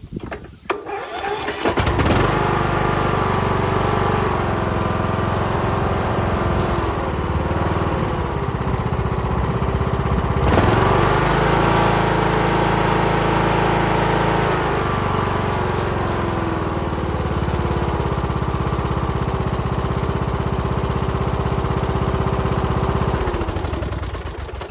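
Riding lawn mower engine starting, catching about two seconds in, then running steadily. It speeds up for a few seconds around the middle, settles back down, and cuts off just before the end. It runs without the knock of a loose engine, its mounting bolts now tightened down with thread locker.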